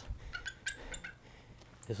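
A few short, high bird chirps, bunched in the first second.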